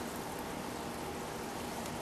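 Steady fizzing and bubbling of hydrogen gas escaping from a pot of water, aluminum granules and catalytic carbon as they react.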